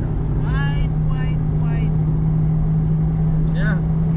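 Car running at a steady cruise, heard from inside the cabin: a constant engine drone with road rumble underneath. A few brief snatches of voice come over it.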